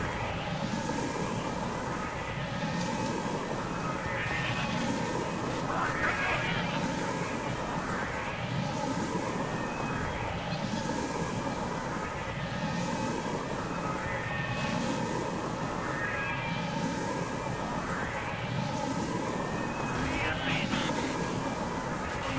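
Experimental glitch noise music: a dense droning noise bed with steady held tones, cut by a sweep rising in pitch that repeats about every two seconds.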